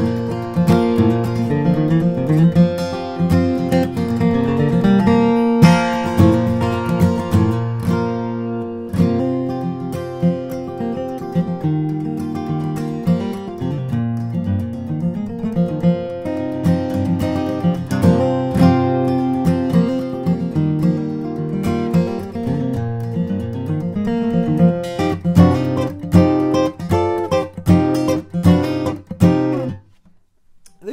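2009 Bourgeois DB Signature dreadnought acoustic guitar, with an Adirondack spruce top and Madagascar rosewood back and sides, played solo in B flat with a capo. It is a continuous passage of picked single-note runs and bass lines mixed with strums.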